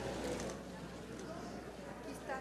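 Indistinct murmur of voices in a large hall, with no clear speech.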